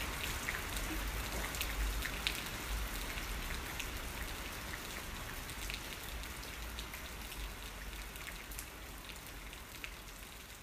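Steady rain with scattered drops ticking close by, slowly fading down.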